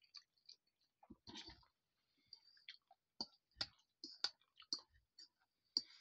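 Faint, irregular mouth clicks and smacks of a person eating and drinking close to the microphone, about a dozen short sharp sounds.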